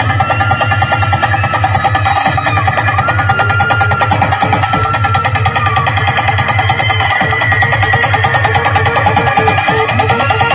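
Loud music track played through a large stack of DJ loudspeakers in a sound test, with heavy bass, a fast steady beat and a sustained melody line above.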